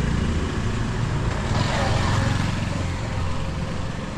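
Motor scooter engine running as it rides away down the lane, its low hum slowly fading.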